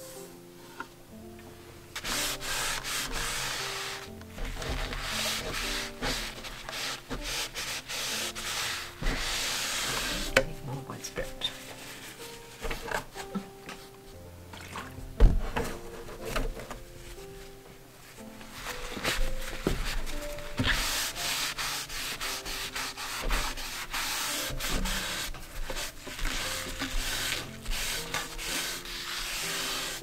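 Close rubbing of tissue and a cotton bud soaked in white spirit over a freshly painted wooden panel, wiping back the green paint to age it, in stretches of scratchy rubbing with short pauses. A single sharp knock about halfway through; soft background music plays underneath.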